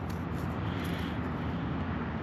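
Steady, even outdoor background rumble with no distinct sound standing out.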